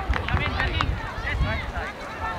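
Several voices of spectators and players shouting and calling over one another during play, none clearly in front, over a low rumble of wind on the microphone.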